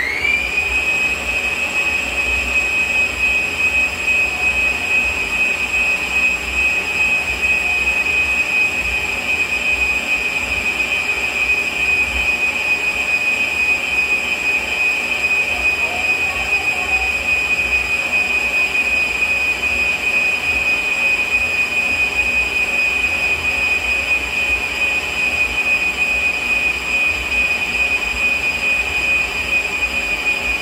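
Electric stand mixer beating cake batter: its motor finishes speeding up about half a second in, then runs at a steady high-pitched whine.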